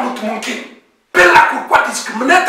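Only speech: a man preaching in a loud, emphatic voice, with a brief total dropout to silence about a second in.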